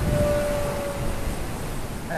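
Small RC airplane's brushless motor and 5x3 propeller (Racerstar BR1306 3100KV with a Gemfan 5030 prop) whining at a steady pitch as the plane flies past, fading out about a second in. Wind rumbles on the microphone underneath.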